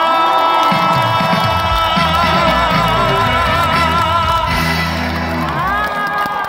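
A male singer holds one long note with vibrato into a microphone over a live band, with a crowd cheering; near the end his voice slides up onto a new note.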